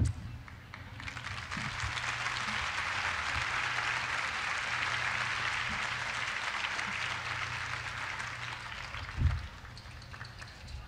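Audience applauding, building up about a second in and dying away near the end.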